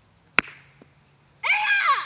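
A croquet mallet strikes the ball once with a single sharp click. About a second later a high voice calls out once, rising and then falling in pitch.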